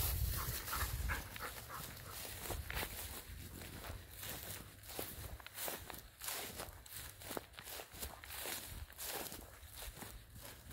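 Footsteps crunching over dry, cut grass and stubble at a steady walking pace, about two steps a second, picked up on a handheld phone. A brief low rumble at the very start comes as the dog runs close past.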